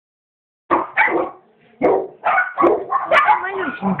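Puppy yapping and barking in quick, rapid bursts that start under a second in, with a brief pause around a second and a half, then run on almost without a break.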